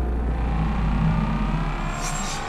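Car engine sound effect: a loud, steady low drone with hiss above it.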